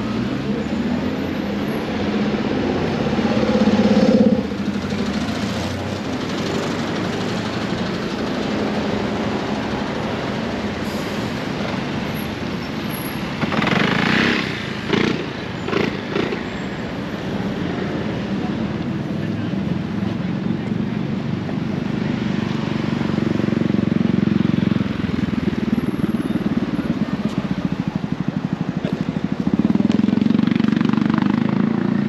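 City street traffic heard while walking: cars and a motor scooter passing a crossing, with a steady traffic rumble that swells as vehicles go by early on and again near the end. A short run of louder bursts comes about halfway through.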